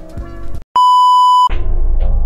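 A single steady electronic beep, one pure high tone held for under a second, like a censor bleep or test tone, used as a transition sound effect. Background music before it cuts out just before the beep, and louder, bass-heavy music starts as the beep ends.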